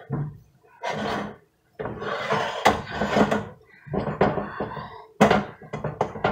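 Silicone spatula scraping and spreading a thick mixture in a glass baking dish, in several separate strokes, with a knock near the end as the dish is handled.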